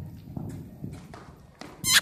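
Horse's hoofbeats cantering on soft arena footing, dull irregular thuds, then a brief loud high-pitched squeal near the end.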